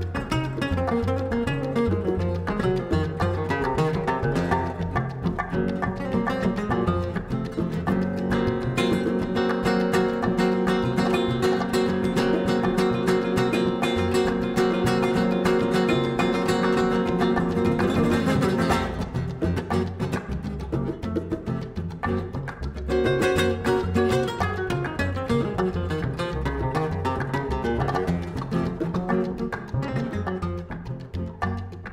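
Flamenco-style Spanish nylon-string acoustic guitar playing a fast instrumental, backed by a plucked upright double bass and hand drums. The music thins and drops quieter about two-thirds of the way through, then comes back up to full level.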